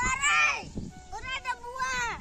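Children's voices calling out in high pitch: one loud call at the start, then shorter calls through the rest.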